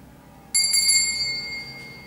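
Small sacristy bell struck once about half a second in, its bright, high ring fading over about a second and a half. It signals the priest entering the sanctuary to begin Mass.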